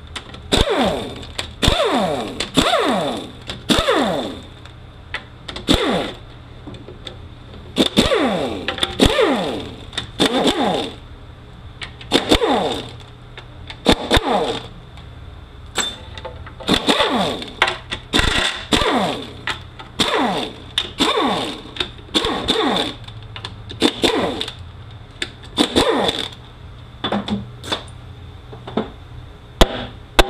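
Air ratchet spinning out the 13 mm transmission pan bolts in short repeated bursts about a second apart, each whir falling in pitch as the tool winds down. A few short sharp knocks near the end.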